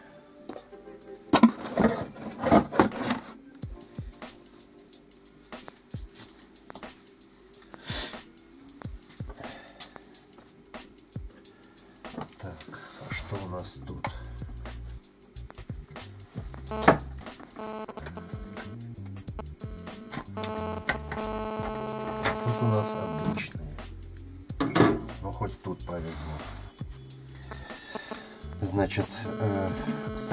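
Intermittent clicks and knocks of objects being handled and moved about on a workbench while a hex key is searched for. Music with sustained notes comes up under them from about halfway through.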